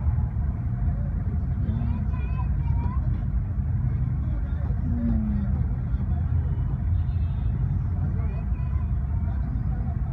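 Steady low rumble of vehicle engines idling in stopped traffic, with voices talking faintly now and then.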